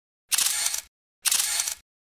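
Two camera-shutter sound effects, each a crisp burst of clicking noise about half a second long, with dead silence between them.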